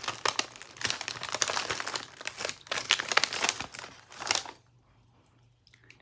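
A bag being opened and handled by hand, crinkling as a dense run of small crackles that stops about four and a half seconds in.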